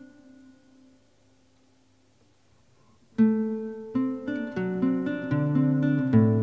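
Nylon-string classical guitar: a chord rings and fades away almost to silence. About three seconds in, a sharply plucked chord breaks in, followed by a string of fingerpicked notes moving in pitch.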